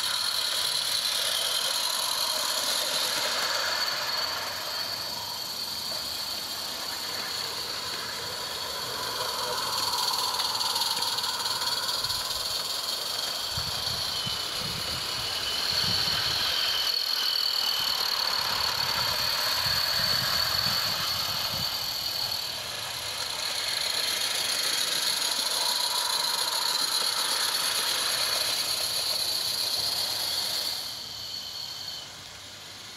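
Garden-scale live-steam model locomotives running trains on the track, heard as a steady hiss with high, thin tones that drift in pitch. A low rumble comes in from about halfway through until about two-thirds of the way in.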